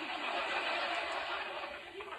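Studio audience laughter from a sitcom soundtrack, heard through a television speaker, easing off near the end.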